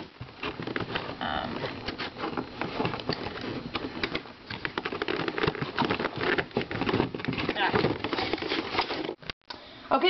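Plastic packaging crinkling and rustling as a boxed collectible figure is handled and pulled free of its tray, a dense run of small crackles and clicks.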